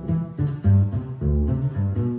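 Upright double bass played pizzicato: a run of plucked jazz bass notes, several a second, with no saxophone or voice over it.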